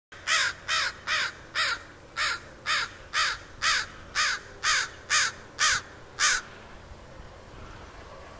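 A crow cawing in a long, even series of about thirteen harsh caws, roughly two a second, that stops about six and a half seconds in.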